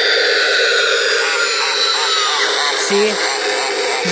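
The gear motor of a Spirit Halloween jumping pop-up zombie animatronic runs its lift mechanism with a steady whine that slowly drops in pitch. The prop's recorded voice audio plays through its speaker over it. The motor keeps running after it hits the relay switch, which the owner puts down to a fault on the control board.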